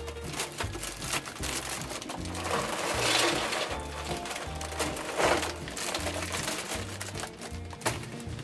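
Charcoal briquettes clattering and rattling as they pour from a bag into a metal chimney starter, loudest about three seconds in and again about five seconds in. Background music with a steady bass line plays throughout.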